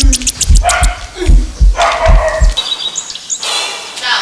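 A dog barking several times over a music beat of deep thuds, which stops about two and a half seconds in; a few short high tones follow near the end.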